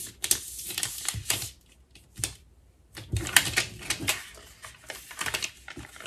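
Clear contact paper being peeled back off a vinyl decal's backing sheet, lifting the vinyl design with it. It crackles in a run of irregular sharp ticks and snaps, with a pause of about a second near the middle.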